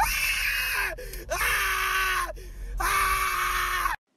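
A person screaming three times in a row, each scream held for about a second with short breaks between, the last one cut off suddenly.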